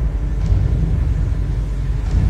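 Low, steady rumbling drone of a dark ambient background score.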